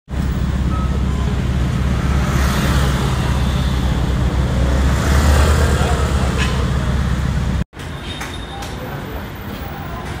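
City street traffic noise with a heavy, steady low rumble and the voices of passers-by. It cuts off suddenly about three quarters of the way through, giving way to a quieter, steadier background.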